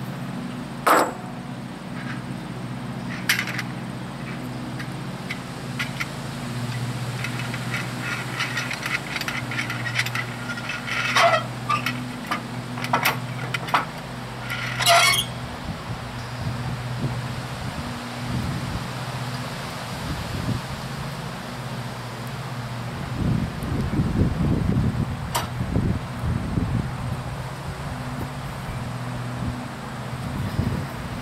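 Scattered sharp metallic clinks and knocks of hand tools on trailer wheel hardware, with a cluster of them about midway, over a steady low hum. Later there is a few seconds of low rumbling from wind on the microphone.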